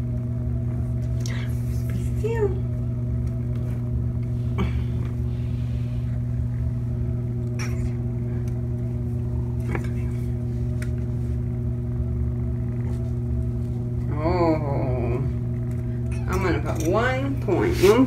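Steady low electrical hum with a few overtones, with scattered light clicks and knocks of handling. A short wavering voice sounds about fourteen seconds in, and more voice comes near the end.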